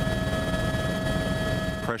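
Helicopter noise: a steady turbine whine made of several held tones over a fast low rotor throb.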